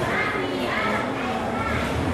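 Indistinct, high-pitched voices talking over a steady background hubbub.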